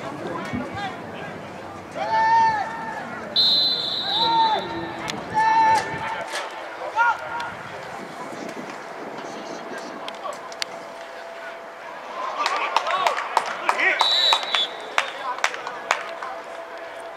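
Players and coaches shouting on a football sideline, with a high steady referee's whistle blast a few seconds in and another near the end as the play is whistled dead after a tackle. Sharp knocks and more shouting come just before the second whistle.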